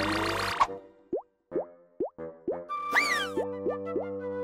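Cartoon score ending in a quick rising sting, then a run of about seven short rising 'plop' sound effects, spaced unevenly, with a whistle-like glide up and back down about three seconds in.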